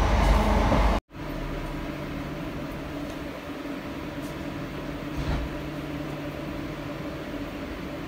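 Inside a train carriage: the loud rumble of the train running on the track for about a second, which cuts off abruptly. A quieter, steady hum inside the carriage follows.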